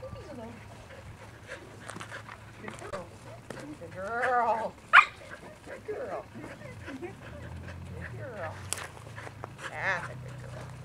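Sheep bleating in a quavering call about four seconds in and again near the end, with one short, sharp dog bark just after the first bleat.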